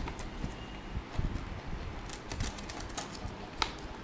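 Clear plastic blister tray and its plastic bag being handled: scattered small clicks and crackles, with a few sharper ones.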